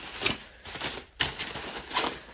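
Plastic bubble wrap rustling and crinkling as it is wrapped around a saddle, in irregular crackles with one sharp click a little past a second in.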